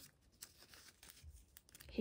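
Faint rustling and crinkling of clear plastic photocard binder sleeves as a paper filler card is slid into a pocket.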